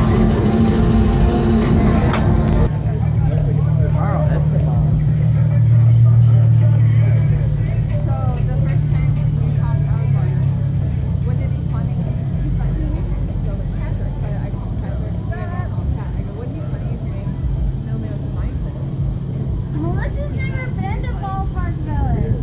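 Music with crowd sound for the first couple of seconds, then an abrupt change to street sound: a motor vehicle's engine running as a low steady hum, loudest about six seconds in and fading away, with people talking now and then.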